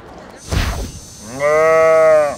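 A short whoosh about half a second in, then a loud, drawn-out low-pitched tone lasting about a second, held level in pitch and rounding off at the end. These are comic sound effects laid over a scene change.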